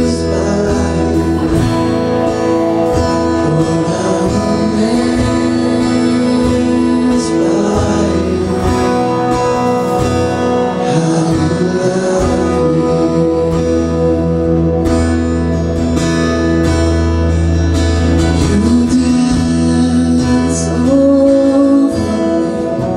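Live worship band playing a song: a man sings lead while strumming an acoustic guitar, backed by a drum kit, electric bass and electric guitar.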